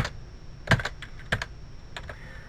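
Computer keyboard keystrokes: a handful of separate key presses at an uneven pace, in small groups with short pauses between, as HTML code is typed.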